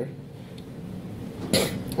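A single short cough about a second and a half in, over quiet room tone with a faint low hum.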